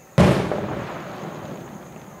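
An aerial firework shell bursting: a single loud bang about a fifth of a second in, followed by a rumbling echo that fades over the next second and a half.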